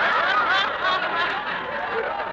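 A live studio audience laughing, many voices at once, on an old-time radio broadcast recording with muffled, narrow sound; the laughter eases slightly near the end.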